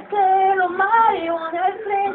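A woman singing live, holding drawn-out wordless vowel notes that step up and down in pitch, her voice standing clear over little accompaniment.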